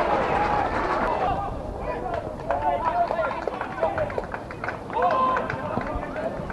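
Pitch-side sound of an outdoor football match: players and spectators shouting and calling across the ground, with a few short knocks in the middle seconds.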